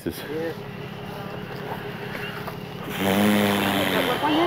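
A steady low vehicle engine idle, with people's voices in the background and a louder, drawn-out voice sound about a second long near the end.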